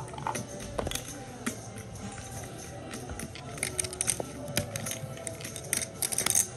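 Soft background music over card-room ambience, with many sharp clicks of poker chips clacking as they are stacked and handled, busiest in the second half.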